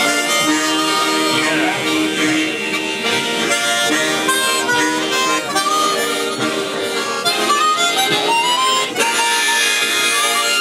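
A harmonica ensemble playing a tune together: a large chord harmonica and several chromatic harmonicas, with sustained chords under a moving melody.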